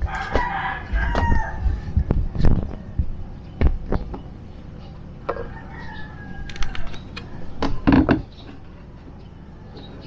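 A rooster crowing twice, once at the start and again about five seconds in, over a run of sharp knocks and clicks from handling plastic panels and a multimeter, loudest about two and a half and eight seconds in.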